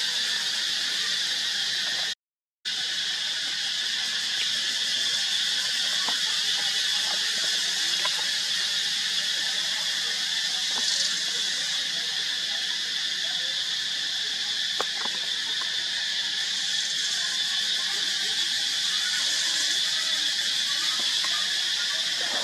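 A steady, high-pitched insect chorus that cuts out for about half a second a little after two seconds in, with a few faint clicks over it.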